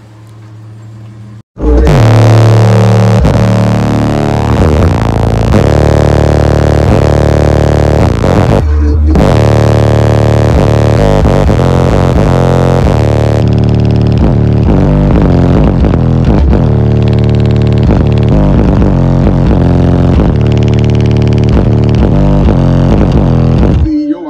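Bass-heavy rap music played very loud on a car audio system with six Sundown SA v2 15-inch subwoofers, heard from inside the cabin. It cuts in suddenly about a second and a half in, with a brief break near nine seconds.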